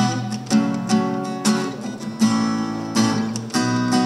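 Acoustic guitar strumming chords in a slow, even rhythm, with no voice over it.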